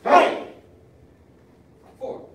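A class of children shouting "Hey!" together as they throw a punch: one loud, short shout at the start. Near the end a voice begins the next count.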